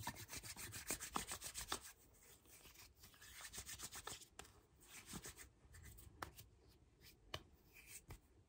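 Hands rubbing together, faint, in quick repeated strokes: one run in the first two seconds and another around the middle, followed by a few light ticks.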